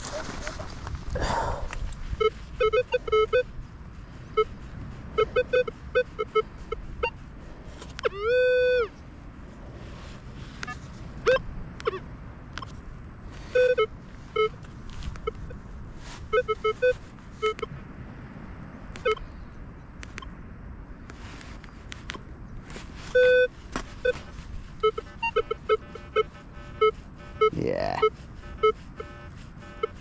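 Minelab Vanquish 540 metal detector sounding repeated short low beeps as its coil passes over a dug hole, with a couple of longer held tones. The low tone is the iron grunt that marks the target as iron. Scattered sharp clicks run between the beeps.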